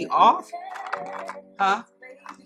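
A woman's voice making two short wordless sounds, one at the start and one about a second and a half later, with light clicks and taps of handling things on a table over a low steady hum.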